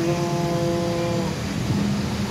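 A man's drawn-out hesitation sound, a single 'ehhh' held at one steady pitch for just over a second while he thinks of an answer, over a steady low hum.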